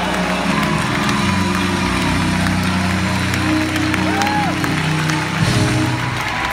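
Live music of sustained low chords, changing about a second in and again near the end, with an audience cheering, calling out and clapping over it.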